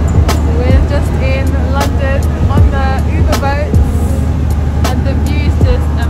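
Steady low rumble of a Thames passenger boat under way on an open deck, with wind buffeting the microphone in repeated knocks. Two voices talk and laugh over it.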